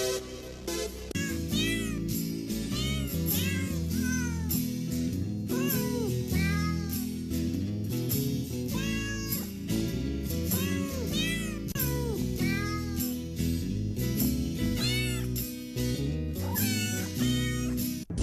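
Cat meows, one after another at about one or two a second, each rising and then falling in pitch, over background music.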